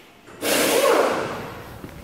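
A single long, audible breath close to the microphone. It starts suddenly about half a second in and fades away over about a second and a half.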